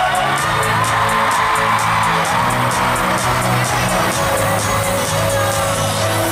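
Live pop music played loud through an arena sound system, with a steady beat and held bass notes, while the crowd cheers over it.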